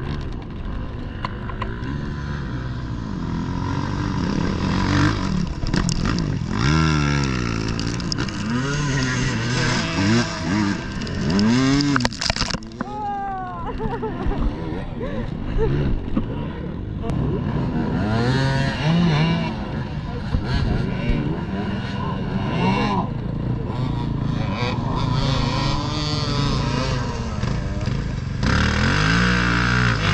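Several enduro dirt-bike engines revving hard and repeatedly, the pitch rising and falling as the riders gas and back off on a soaked, slippery mud climb.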